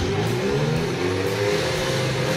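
Portable fire pump's engine running and revving up, its pitch rising over about the first second and a half and then holding steady.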